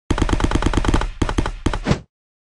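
Rapid burst of sharp, heavy bangs, like an automatic-gunfire sound effect, about ten a second for the first second, then breaking up unevenly before stopping abruptly.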